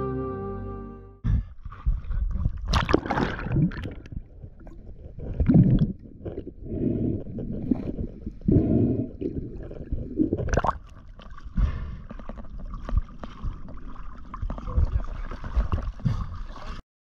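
Background music ends about a second in, giving way to sea water sloshing and splashing in irregular surges around a camera held at the waterline, with some gurgling.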